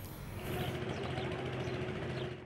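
Steady running noise of vehicle engines with an outdoor rumble, coming up about half a second in.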